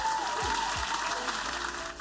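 Applause over background music with a steady beat; the applause cuts off abruptly near the end.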